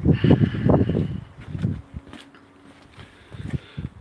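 Footsteps of a person walking, several irregular steps in the first two seconds, then quieter with a few light clicks.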